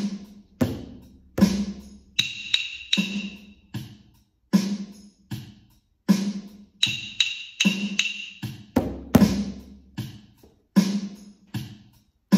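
A steady recorded drum beat, about 80 beats a minute, with a pair of wooden rhythm sticks clicked together in short patterns over it. The stick patterns come twice, about two seconds in and again near the middle, each followed by bars of the beat alone.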